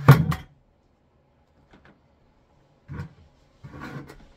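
Handling noise: a quick clatter of sharp knocks right at the start, then a lull, then softer knocks and shuffling about three seconds in and again near the end.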